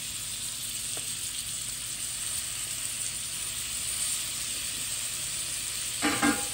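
Sea scallops searing in melted butter in a cast-iron skillet on medium-high heat, giving a steady sizzle.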